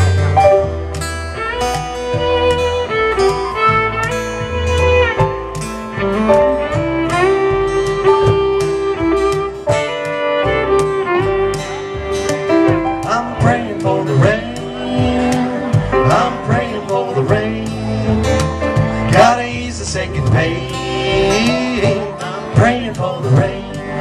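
Live country-bluegrass band playing an instrumental intro: a fiddle melody with sliding notes over strummed acoustic guitar, upright bass and keyboard.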